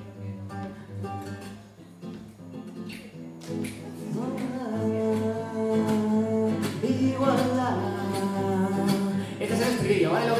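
Acoustic guitar played, with quiet picked notes at first and a fuller, louder sound from about four seconds in. A man's voice joins in over the guitar in the second half.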